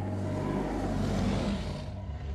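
A car driving: steady engine and road noise with no sharp events, swelling slightly about midway.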